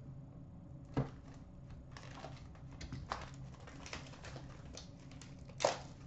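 Cardboard hockey card hobby box being opened and its contents handled: faint rustling and scattered light clicks, with a sharper knock about a second in and a louder one near the end.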